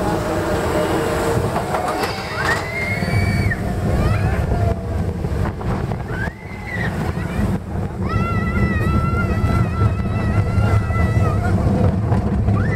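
Expedition Everest roller coaster train running along its track, a heavy rumble with wind buffeting the microphone. Riders let out high-pitched screams, the longest held for about three seconds near the end.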